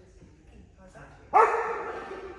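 A dog gives one loud bark about a second and a half in. It starts sharply and trails off with echo.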